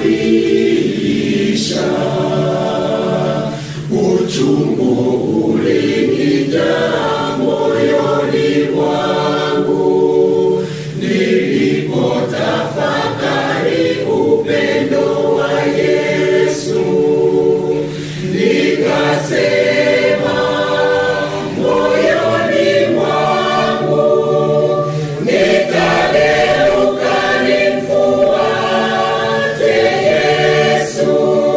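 A mixed choir of men's and women's voices sings a Swahili hymn in long phrases, with brief pauses between them.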